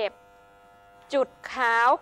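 Electric hair clipper running with a faint, steady buzz as it is worked over a comb to blend a taper; a woman's voice talks over it at the start and again near the end.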